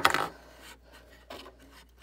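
LEGO plastic pieces handled on a table: a sharp plastic clack right at the start with a brief scrape after it, then faint rubbing and a small tap later on.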